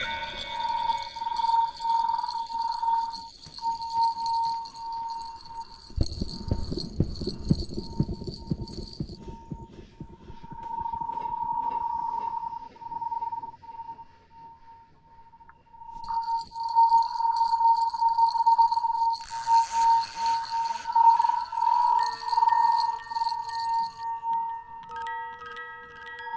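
Background music: a long held high note with short breaks and chime-like tones, with mallet notes coming back near the end. A low rumble runs for a few seconds about a quarter of the way in.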